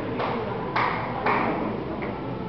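Three short, bright pings about half a second apart, each starting sharply and fading.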